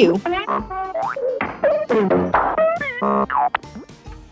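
A quick run of cartoon play sound effects, boings and swooping rises and falls in pitch with short knocks, and a brief buzzy tone about three seconds in, matching the toy noises on the page: bang, scribble, tap, brrm and zoom.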